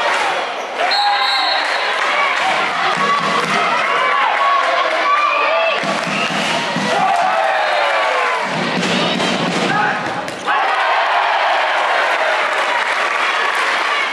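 Handball game sounds in a sports hall: the ball bouncing on the court floor among players' shouts and voices.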